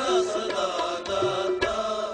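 Kirtan music in Rag Dhanasari: a melodic line with gliding ornaments over a steady drone, with drum strokes.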